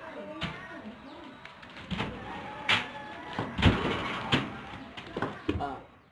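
Irregular thuds of bare feet and hands landing on a paper sheet laid over a carpet, about six in the space of a few seconds as the hopscotch-style course is hopped through, with faint voices in the background.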